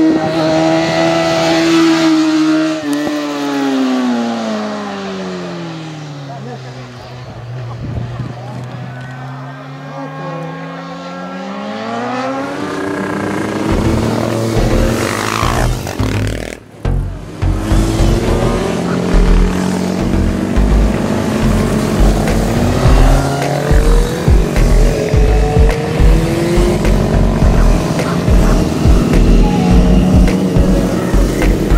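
A racing motorcycle's engine at high revs, its pitch falling steadily for several seconds and then rising again as it pulls away. After a brief break about halfway through, a dense sound with an even, pulsing beat takes over.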